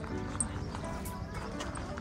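Soft background music with steady held notes, with a few faint ticks.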